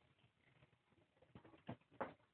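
Near silence with a few faint, short taps and knocks in the second half, from two kittens playing and scampering about.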